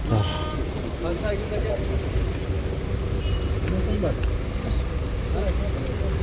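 Car engines idling: a steady low rumble with a faint steady hum above it, and brief snatches of distant voices.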